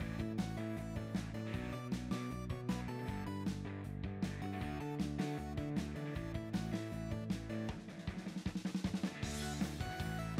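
Background music with a steady drum beat and bass line, with a quick run of drum hits near the end.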